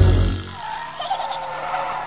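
Tyre-skid sound effect for a cartoon monster truck: a hissing screech with a wavering squeal, starting as the music cuts off about half a second in.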